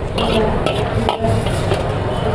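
Metal ladle scraping and knocking against a large wok in several quick strokes as vegetables are stir-fried, with a sizzle of frying under it.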